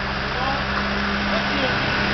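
A steady machine hum, engine-like, holding one constant low drone, with faint voices over it.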